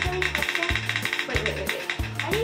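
A phone's spin-the-wheel app ticking rapidly and evenly as the picker wheel spins, over music with a steady repeating bass beat.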